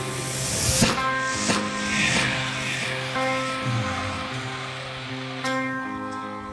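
A stoner-rock band playing live through an instrumental passage, with electric guitar notes held and ringing, and two crashing hits in the first second and a half.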